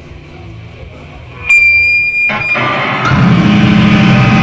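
Live band on stage: quiet low bass notes, then a sudden loud, steady high-pitched guitar-amp feedback squeal about a second and a half in that lasts about a second, before the band starts into loud rock music near the end.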